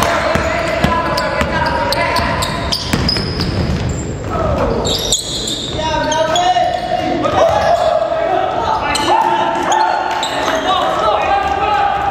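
Basketball dribbled on a hardwood gym floor, with repeated sharp bounces, under players' voices calling out, echoing in a large hall.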